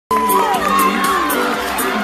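Audience cheering and shouting over music, with falling whoops in the first second.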